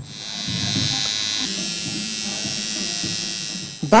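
Electric tattoo machine buzzing steadily, its tone shifting slightly about a second and a half in.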